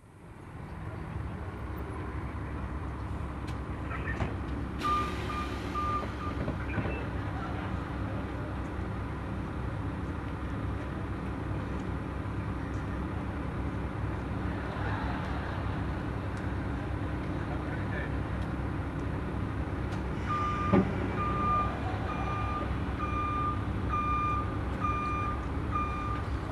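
City transit bus at a stop with its engine running steadily. It gives a short run of high electronic warning beeps about five seconds in, and a steady series of repeated beeps through the last six seconds.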